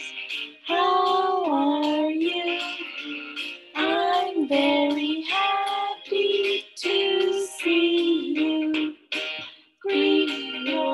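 A children's circle-time song: a woman singing short, gliding phrases over instrumental backing, with brief gaps between phrases and a short break near the end.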